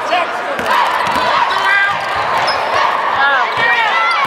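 Basketball being dribbled and bouncing on a hardwood court, with sneakers squeaking in short high squeals as players cut and stop. Voices of players and spectators are heard throughout.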